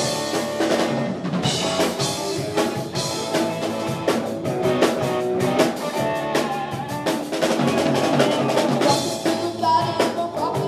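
Rock band playing live: a drum kit keeping a steady beat with electric guitars and bass guitar through amplifiers.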